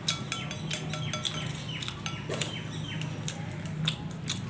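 Wooden chopsticks clicking and scraping against ceramic bowls of noodles, many quick clicks with short rings, over a steady low hum.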